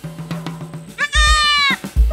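A goat bleats once about a second in, a high call lasting under a second that drops slightly in pitch at the end, over background music with a drum beat.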